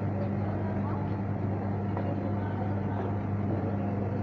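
Steady low electrical hum of supermarket equipment, with a faint murmur of voices in the background.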